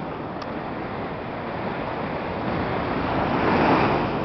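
Small waves washing up a sandy beach, a steady surf hiss that swells about three seconds in as a wave runs up the shore.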